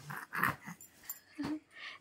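A young infant making a few soft, short breathy grunts and one brief voiced squeak a little past the middle.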